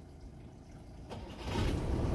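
Low engine rumble with a rushing noise, faint at first and growing louder over the second half.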